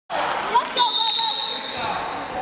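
Gymnasium sound during a wrestling bout cuts in suddenly: voices of coaches and spectators echo in the hall and a few thuds come from the mat. A thin, steady high tone is held for about a second from just under a second in.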